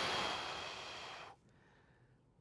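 A man's long, forceful exhale blown out through the mouth, loudest at the start and fading away until it stops about a second and a half in. He is breathing out on the lifting effort as he curls a pair of dumbbells up.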